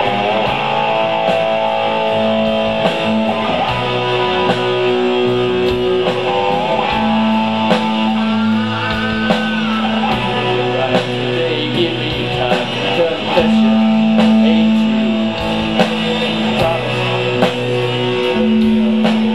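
Live rock band playing an instrumental passage: electric guitars with held, bending lead notes over electric bass and a steady drum beat.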